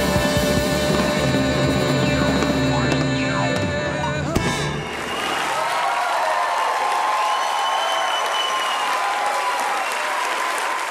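A live rock and roll band with drums and a singer plays out a song and stops on a final hit about four seconds in, then the audience applauds and cheers.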